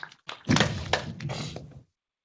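Dull thuds and knocks: one short knock at the start, then a heavier thunk about half a second in, followed by a few smaller knocks that fade and cut off to silence shortly before the end.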